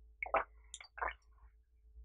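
Tea being sipped and slurped from a glass: three short, wet sips in quick succession.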